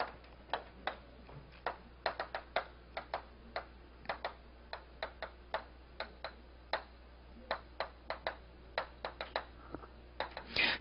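Chalk clicking and tapping against a chalkboard as a line of text is written: an irregular run of sharp ticks, two or three a second.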